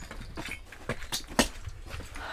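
Footsteps and a few light knocks, the sharpest a little past the middle, as people walk in through a sliding glass door, over a low handling rumble.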